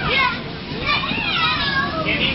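Young children playing and calling out with high voices inside an inflatable bounce house, with an adult laughing and calling "jump!" at the start.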